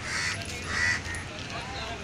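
A crow cawing twice, the second caw louder, over a background of people's voices.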